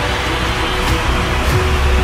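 Cinematic background music with a heavy, sustained bass and held tones under a fighter's title card.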